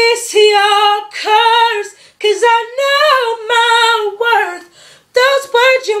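A young woman singing unaccompanied: a few held notes, then a long run that rises and falls, with short breaths between phrases. Her voice is hoarse from being sick, which she says makes it sound weird.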